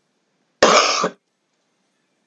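A woman coughs once, a short sharp cough a little over half a second in, from what she calls a throat problem.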